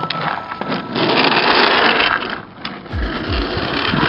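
Skateboard wheels rolling on rough tarmac close to the microphone: a rattly noise, loudest in the first half, with a few sharp clicks.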